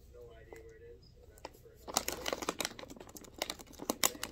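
Thin plastic bag crinkling and rustling as it is handled, a quick run of crackles starting about halfway through, after a faint voice in the first half.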